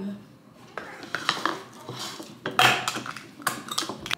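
Ceramic bowls clinking and knocking on a hard countertop as cat meals are set out: a scattered series of short sharp clinks and taps, busiest in the second half.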